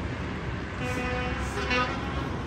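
Steady low rumble of street traffic, with a vehicle horn sounding once for about a second near the middle.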